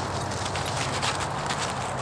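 Dry bracken fronds being torn and rubbed between the hands into fine, powder-like tinder: a dense, even run of small crackles and rustles.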